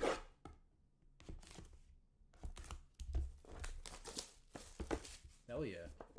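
Trading card box being opened by hand: a run of irregular scraping and tearing as the wrapper and box are torn open.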